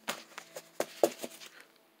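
Handling noise as the camera is moved: about half a dozen faint, short taps and clicks over a faint steady hum.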